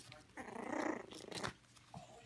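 Yorkshire Terrier growling: a rough growl lasting under a second, followed by a few sharp clicks.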